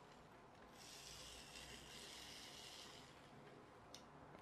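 Near silence: faint rustling of hands handling a small plastic solar toy car, with a tiny click near the end.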